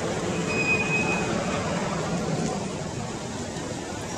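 Steady outdoor background noise, with a brief thin high tone about half a second in.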